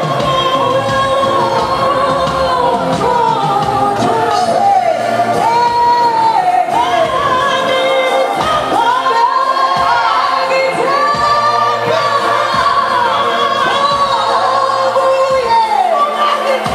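A group of voices singing together, carrying a slow melody without a break.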